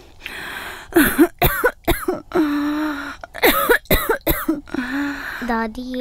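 An elderly woman coughing in two fits of several coughs each, with a long held groan between them.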